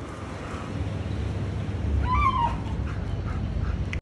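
A Siberian husky gives one short, high whine about two seconds in, lasting about half a second and dipping in pitch at the end.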